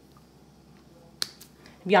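Quiet room tone with a single sharp click about a second in, from handling the small plastic dropper bottle of red food colouring over the pot of melted soap.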